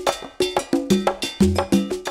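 Intro music sting: a quick rhythmic run of struck percussion notes, about six a second, over deep bass notes.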